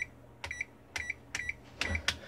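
Victor VC97 digital multimeter's rotary selector switch turned through its positions, about five soft detent clicks roughly two per second, each followed by a short beep from the meter's buzzer. The detent balls have been greased, and the dial turns smoothly, without the hard snap it had before.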